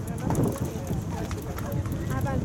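Voices of players and sideline spectators calling out across an outdoor soccer field, unclear and distant, over a steady low rumble with a few scattered light knocks.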